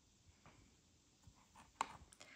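Near silence broken by a few faint clicks and light rubbing from someone working a laptop by hand, with one sharper click near the end.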